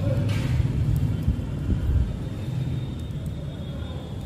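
A steady low rumble in the background, with a few faint light clicks of metal knitting needles being worked.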